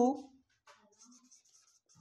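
Marker pen writing on a whiteboard: faint scratchy strokes, heard in short patches once the voice stops.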